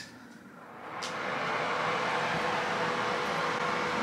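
A bathroom exhaust fan starts up, with a click about a second in, and rises over about a second to a steady whir with a faint steady hum.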